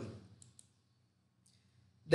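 Near silence: room tone, with two faint clicks about half a second and a second and a half in.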